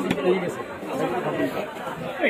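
Background chatter of several people talking, with one short knock at the very start.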